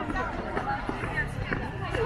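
Overlapping chatter of several passers-by, voices mixing at a distance over a steady low rumble.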